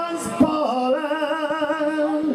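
A man singing an Irish folk ballad, holding long notes with a steady vibrato.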